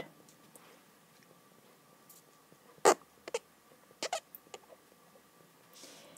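Faint stylus taps and strokes on a tablet screen while a word is handwritten: a few short, sharp clicks about three to four and a half seconds in.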